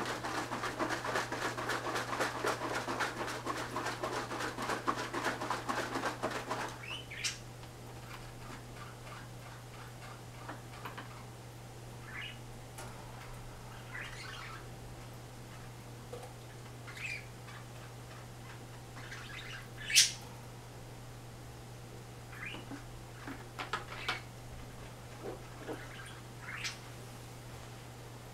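Water running and splashing into a fish tank, cutting off about seven seconds in. After that come scattered short high chirps, one much louder near twenty seconds in, over a steady low hum.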